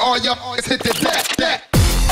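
Jungle / drum and bass DJ mix playing, with a rapped vocal over the beat. About a second and a half in the track drops out briefly, then heavy bass and drums slam back in near the end.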